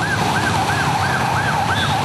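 Ambulance siren in a fast yelp, its pitch sweeping up and down about four to five times a second, over the low hum of traffic.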